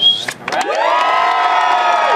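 A crowd cheering and whooping, many voices rising together about half a second in and held loud, with a brief high whistle at the very start.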